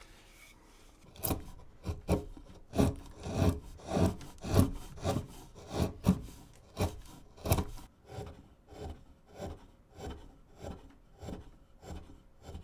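Hand wood-carving gouge cutting into a basswood blank in short repeated strokes, about two a second, starting about a second in. The cuts are heaviest in the middle and lighter and more even near the end.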